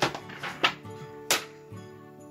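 Three sharp hard-plastic clicks over about a second and a half, from sewing-machine thread and bobbin parts being handled, over soft background music.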